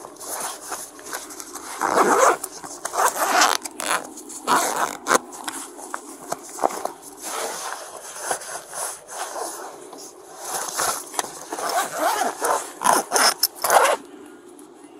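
A soft nylon travel bag being rummaged by hand: clothing rustling and rubbing against the fabric, with scrapes and clicks in irregular strokes. Near the end the bag's zipper is pulled shut in a quick run of short strokes.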